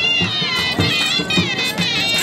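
Traditional Punjabi folk music: a high, wavering reed-like melody over a steady drum beat.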